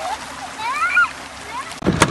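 Shallow water splashing and washing at the shoreline, where a shoal of small fish is thrashing in the wash, with a voice calling out a couple of times. Near the end it changes abruptly to louder voices.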